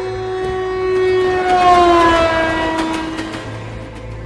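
A loud multi-note horn, likely from a passing train, that swells to a peak about two seconds in, then drops in pitch as it goes by and fades.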